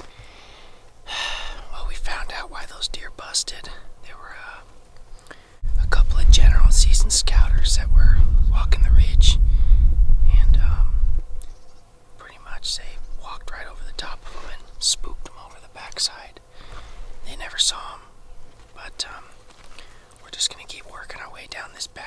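Hushed whispering between two people, with a loud low rumble on the microphone for about five seconds in the middle.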